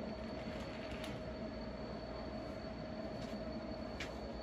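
A steady hum with a few faint light clicks around the first second.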